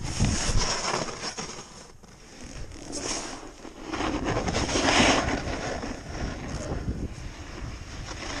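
Snowboard sliding and carving over snow, the scrape swelling and fading with each turn and loudest about five seconds in, with wind buffeting the microphone.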